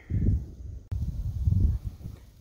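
Muffled, low thumps and rustles of someone walking through dry grass and leaf litter, about two steps a second, with a sharp click about a second in.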